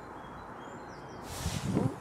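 Garden ambience with faint, high bird chirps, then about a second and a half in a rush of noise with a low rumble on the microphone, ending in a woman's 'ooh'.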